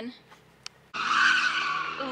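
Near silence for about a second, then a sudden onset: a BMW M3's tyres sliding and scrubbing across loose gravel with a steady hiss, its engine running underneath at an even pitch.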